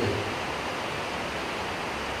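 Steady, even hiss of background noise with no other events, filling a pause in the speech.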